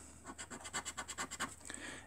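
Metal scratcher scraping the coating off a scratchcard in a fast run of short strokes.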